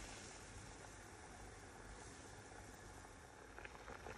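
Faint steady hiss of a pot of water coming to a boil with chicken pieces in it, with a few faint ticks near the end.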